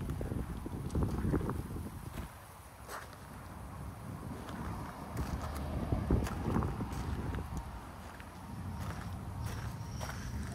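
Footsteps crunching on gravel, irregular steps over a steady low rumble.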